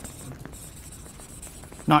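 Marker pen writing on a paper flip-chart pad, its strokes a steady high hiss.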